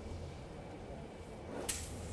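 A single sharp click about three-quarters of the way through as the lock or latch of a heavy metal door is released, over a low steady hum.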